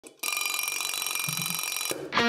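Analog alarm clock ringing, a rapid continuous trill that starts a fraction of a second in. It stops abruptly near the end as it is switched off by hand.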